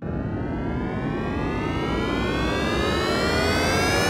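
A loud rushing sound starts suddenly, carrying a whine whose pitch rises steadily throughout, like a machine spooling up.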